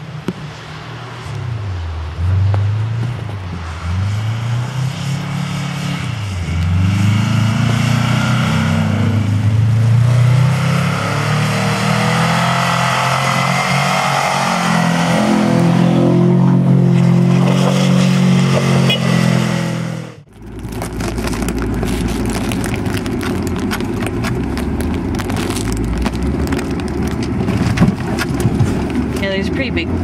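Car engine revving up and down over and over as the car spins in the snow. About two-thirds of the way in the sound cuts to a steady low rumble inside a moving car cabin, with crackling from the tyres on packed snow and ice.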